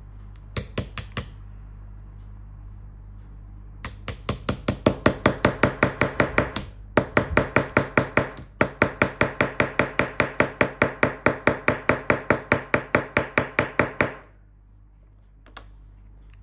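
Orange plastic toy hammer striking a plastic chisel held against a plaster dinosaur-egg dig kit. There are four quick taps about half a second in. From about four seconds in comes a fast, steady run of taps, about four or five a second, broken by two short pauses, which stops abruptly near fourteen seconds.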